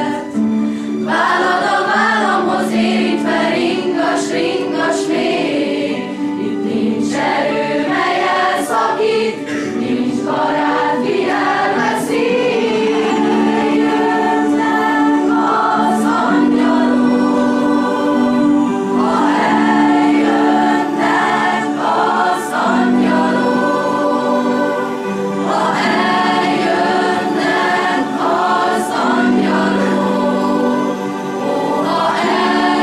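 Choir singing in several voices, with long held notes.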